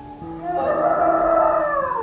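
A woman in labour gives one long, loud cry while pushing, its pitch falling at the end, over soft piano music.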